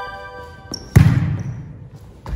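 A short chime-like musical sound effect rings out and fades. About a second in, a volleyball is struck hard by hand with a loud smack that echoes around the gym hall.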